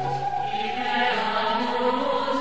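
Techno DJ mix at a breakdown: the kick drum drops out and, with no beat, a long held tone rises slowly in pitch while a bass note fades within about half a second.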